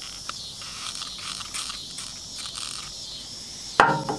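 Steady, high-pitched insect chirring in the background, with a few faint light clicks, then a sudden loud knock just before the end.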